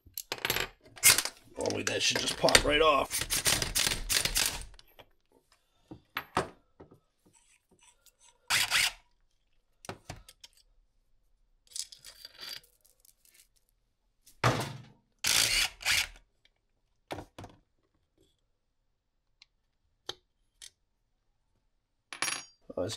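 Metal engine parts and tools being handled on a metal workbench: a run of clattering and scraping for the first few seconds, then scattered clinks and clunks. A chain rattles as it is lifted out of the crankcase about twelve seconds in.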